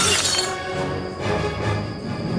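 Glass vases crashing and shattering, the breaking noise trailing off in the first half second, over dramatic background music.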